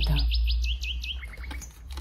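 A small bird chirping: a quick series of short high chirps, about eight a second, then a few lower, weaker chirps that fade out about a second and a half in, over a low steady hum.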